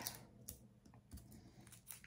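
Near silence with a few faint, light taps and rustles of cardstock being handled by hand.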